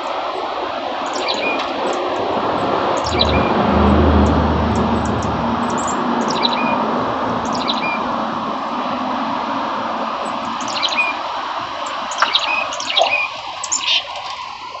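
A small songbird calling in short, high, falling chirps, repeated every second or so and coming thicker near the end, over a steady background noise with a deep rumble a few seconds in.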